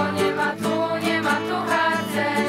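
Group of girls singing a song together, accompanied by a strummed acoustic guitar.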